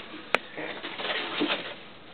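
Cardboard box being handled and shifted, with shredded kraft paper filler rustling. A single sharp tap about a third of a second in is the loudest sound.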